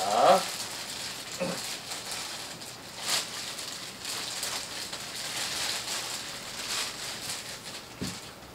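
A clear plastic bag crinkling and rustling as it is handled and moved around, with a sharper rustle about three seconds in.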